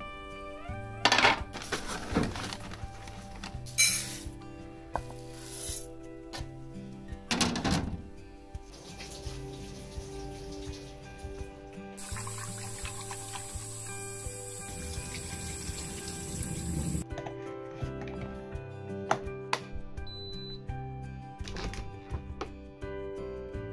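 Background music over kitchen sounds of rice being washed by hand in a rice cooker's inner pot under a running tap: rice and water swishing, with a few short knocks and splashes in the first several seconds and a steady stream of tap water in the middle.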